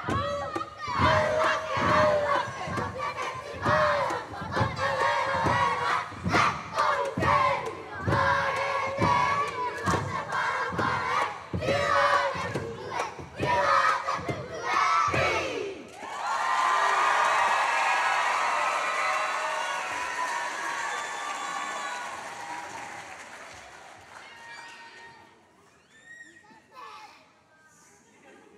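A kapa haka group of children chants and shouts in unison over a steady beat of stamping and slapping, about two strikes a second, ending in a final rising shout about 15 seconds in. The audience then cheers and applauds, and the noise fades away toward the end.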